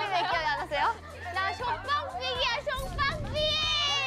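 Young women's voices talking over each other and laughing in Korean, rising to a long, high-pitched shouted exclamation near the end.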